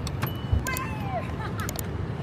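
City street ambience with a steady low rumble of traffic and faint voices, a few light clicks, and a single short thump about half a second in.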